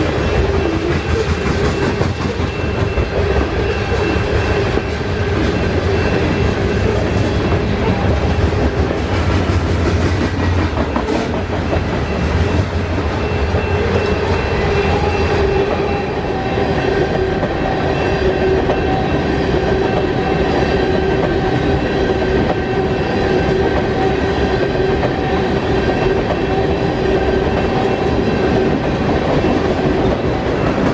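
Long freight train of covered hoppers and tank cars rolling past, a steady loud rumble of the cars and their steel wheels on the rails.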